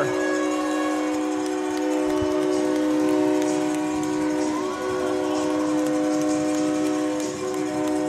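Ice hockey goal horn sounding right after a goal: a loud, steady chord of several notes like a train horn, held without a break.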